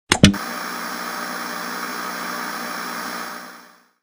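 Two sharp clicks, then a steady electronic hiss with a faint mix of whining tones, which fades away near the end.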